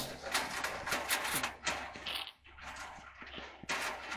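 Handling noise: scraping, rustling and light clicks as gloved hands work at a clothes dryer's heating-element coil wire on its metal heater plate.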